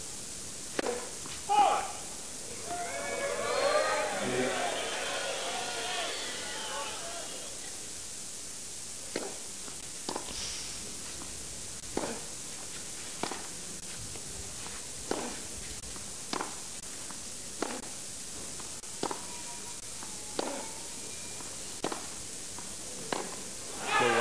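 Tennis rally on a clay court: racket strikes on the ball trade back and forth about every second and a quarter through the second half. Earlier, a brief stretch of crowd voices and calls comes from the stands.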